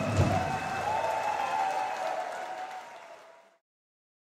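Audience applauding a live band as its last note dies away, with one low hit just after the start and a faint held tone over the clapping. The sound fades out to silence about three and a half seconds in.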